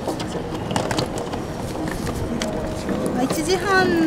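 Train station ticket-gate ambience: background voices and a steady hubbub with scattered sharp clicks, and a voice begins speaking near the end.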